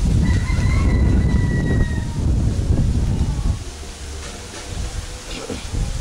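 Wind buffeting the microphone: a heavy, uneven low rumble that eases off in the middle and picks up again near the end. A thin high tone sounds for a second or two near the start.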